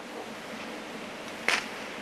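Steady background hiss, with one short spoken word about one and a half seconds in.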